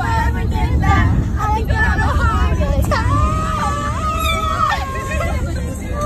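High-pitched female voices singing and wailing, one note held for nearly two seconds from about three seconds in, over the steady low rumble of a moving car's cabin.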